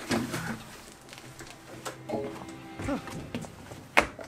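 Scattered knocks and scuffs of shoes and body against a destroyer gun mount's steel hatch as a man climbs out through it, ending in one sharp, loud knock. Music plays faintly underneath.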